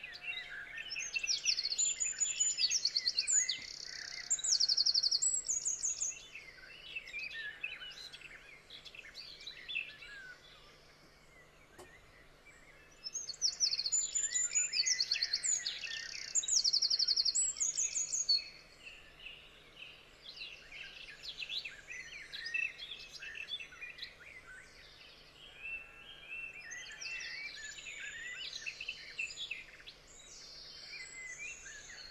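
Songbirds singing, with rapid high trills and chirps, loudest in two stretches of several seconds, one near the start and one midway, with scattered chirps in between. A faint steady low hum lies underneath.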